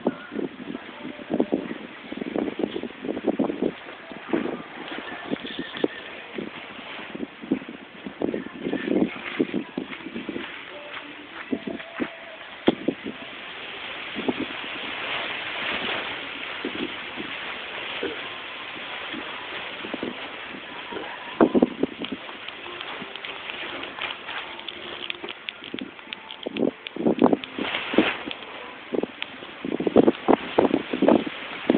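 Irregular short thumps and scuffles from a Doberman leaping at and tugging on a toy hung from a rope, over a steady outdoor hiss.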